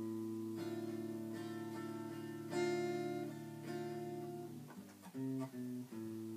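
Red semi-hollow electric guitar played without words: ringing chords changing every second or so, a louder strum about two and a half seconds in, then a short run of single low bass-string notes near the end, like the intro line starting on the 6th string.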